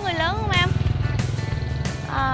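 A motorbike riding past, its small engine running with a fast low putter that is loudest from about half a second in until near the end, over background music.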